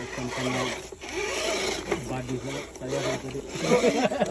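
Electric RC rock crawler working over loose dirt and gravel, a steady rough scraping rasp, with people talking in the background.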